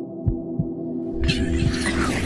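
Synthesized sound design for a video logo animation: a steady droning hum of held tones under deep low thumps that come in pairs like a heartbeat, with a bright shimmering whoosh swelling in about a second in.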